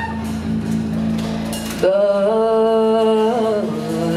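A woman singing live into a microphone: a long held note that comes in loudly about two seconds in, over a steady low drone that drops away as the note begins.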